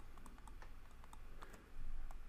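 Stylus tapping and scraping on a tablet screen while handwriting, heard as a string of light, irregular clicks, with a brief louder noise near the end.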